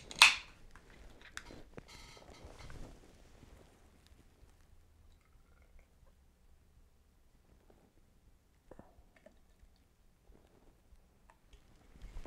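An aluminium beer can's pull tab cracked open with a short, sharp hiss, followed by the beer being poured into a glass. The pour is loudest in the first few seconds, then fades to faint trickling and small clinks.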